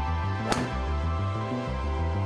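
Background music with a steady bass pattern. About half a second in, one sharp crack as a driver strikes a Wilson Duo Soft two-piece golf ball off a tee.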